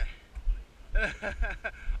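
Men talking briefly in short phrases, over a low rumble.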